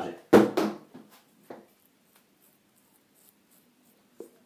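A brief loud sound about a third of a second in, then faint, short scratching strokes: fingertips rubbing over a freshly shaved cheek, feeling for stubble the razor missed.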